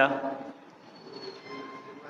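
A man's voice finishing a phrase at a desk microphone, then a pause with low room noise and a few faint, thin high tones about a second in.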